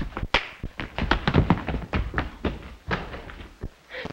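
Film sound effects of a scuffle: a rapid, irregular run of thuds and knocks, densest and heaviest between about one and two and a half seconds in.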